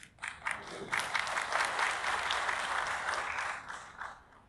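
Audience applauding: a few scattered claps at first, swelling into steady applause about a second in, then dying away near the end.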